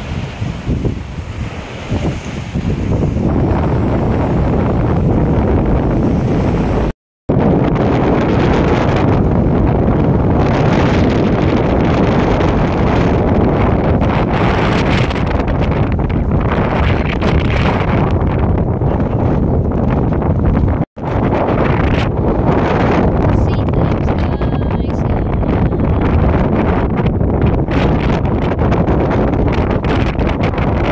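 Strong wind buffeting a phone's microphone: a loud, steady rushing rumble, broken by two brief dropouts about seven seconds in and around twenty-one seconds.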